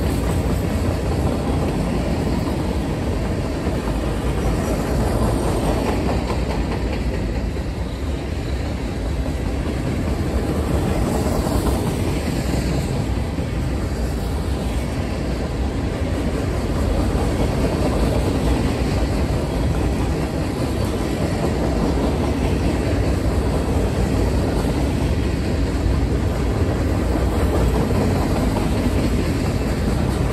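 Empty open-top coal gondolas of a freight train rolling past, their steel wheels rumbling and clattering on the rails in a steady, continuous sound.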